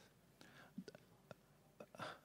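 Near silence in a pause between sentences into a handheld microphone, with three faint short clicks.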